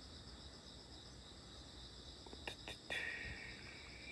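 A steady, high chorus of insects chirring, with a few sharp clicks about two and a half seconds in and a brief hiss near the end.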